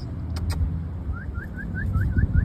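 Low vehicle rumble, with a couple of faint clicks and then, from about a second in, a rapid run of short rising chirps, about five a second.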